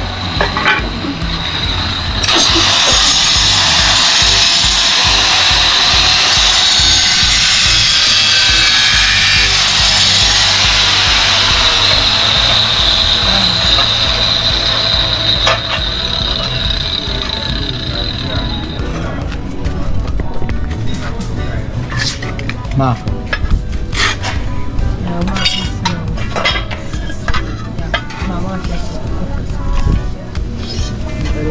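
A DeWalt angle grinder cutting ceramic floor tile: a steady high whine with a grinding hiss, louder a couple of seconds in, that stops about two-thirds of the way through. After it come scattered light clicks and knocks of tile pieces being handled and fitted.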